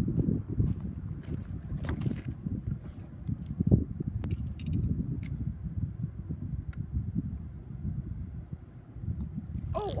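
Wind buffeting the microphone: a fluctuating low rumble, with a few clicks and knocks scattered through it.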